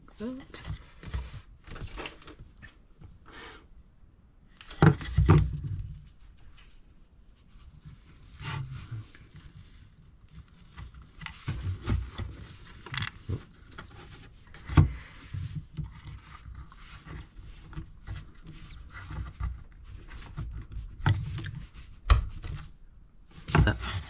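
Handling noise of wooden model-kit parts and a clear plastic disc being fitted together: scattered clicks and knocks with rubbing between them, the loudest knocks about five seconds in and near the middle.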